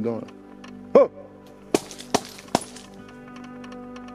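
A short shout, then three sharp hand claps a little under half a second apart, made to scare off any wild boar bedded in the thicket, over steady background music.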